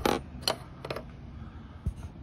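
A few light metallic clicks and taps as a metal try square is set against a zinc flashing upstand, then a single low thump near the end.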